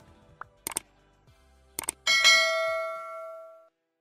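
Subscribe-button animation sound effects: a quick double click, another double click about a second later, then a bright bell ding that rings out and fades over about a second and a half.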